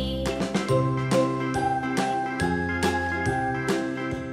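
Instrumental children's background music with bright, bell-like tinkling notes over a steady beat and a simple bass line.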